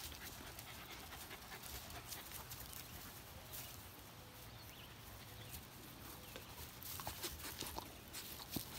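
A dog panting faintly, with a few light clicks near the end.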